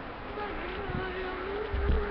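A flying insect buzzing, one steady, slightly wavering tone, with a low thump near the end.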